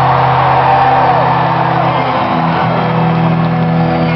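Rock band playing through a concert PA, holding low sustained chords that step up to a higher chord about two seconds in, heard from the audience.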